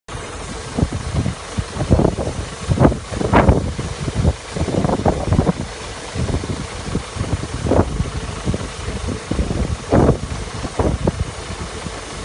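Combine harvester running as its unloading auger pours rapeseed into a trailer: a steady machine drone with the seed running into the heap. Irregular gusts of wind buffet the microphone throughout.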